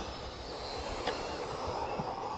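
Electric Tamiya Mini RC touring cars running on the track, heard as a faint motor whine over steady open-air noise. One car's whine rises in pitch in the second half as it accelerates.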